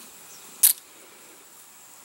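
Elastic-launched model glider being released from its rubber launcher: one brief, sharp snap about two-thirds of a second in.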